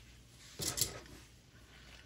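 A brief rustling and scraping of hands handling a stack of cotton fabric and batting and straight pins about half a second in, with two small sharp clicks in it.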